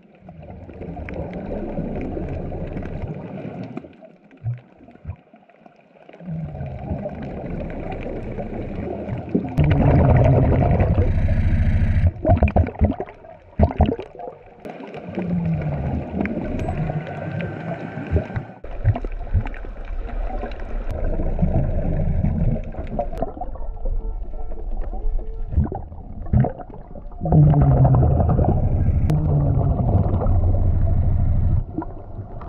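A diver breathing through a regulator underwater: exhaled bubbles rumble and gurgle in several loud bursts a few seconds apart, with quieter stretches between breaths.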